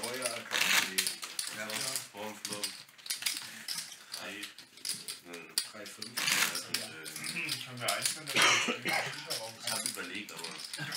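Players talking at a poker table, with poker chips clicking against each other as they are handled and stacked.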